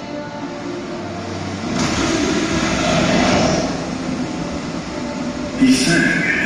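A stage show's soundtrack playing over a hall's loudspeakers: music, then a rushing, rumbling noise that swells in about two seconds in and peaks a second later. A brighter, sharper sound comes in just before the end.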